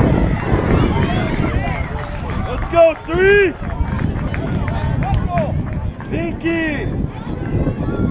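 High voices calling out and shouting across a softball field, with two loud drawn-out calls about three seconds in and six and a half seconds in, over a steady low wind rumble on the microphone.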